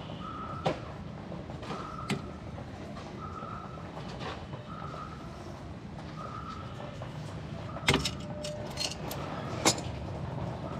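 Sharp metallic clicks from pliers gripping and turning the drum brake shoe hold-down pins and springs, a few scattered ones with the loudest pair near the end. Under them a faint high beep repeats about once a second over a steady low background hum.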